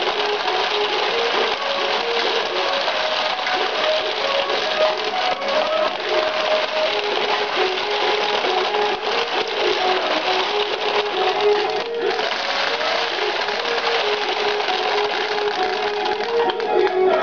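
Ukiyo-e pachinko machine playing its reach music, a simple repeating melody, over a dense steady rattle of steel balls running through the pins. The rattle drops out for a moment about three-quarters of the way in.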